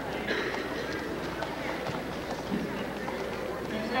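Indistinct voices of spectators and coaches in a gym, with scattered light steps of wrestling shoes on the mat.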